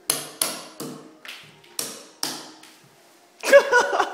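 A hand hammer striking at the wall, about six sharp blows with a ringing edge in roughly two and a half seconds. Near the end a man's voice cuts in loudly.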